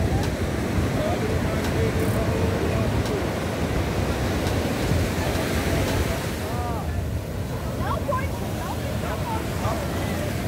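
Surf breaking on a sandy beach, a steady rush of waves with wind buffeting the microphone. Faint voices of people on the beach come through, mostly in the second half.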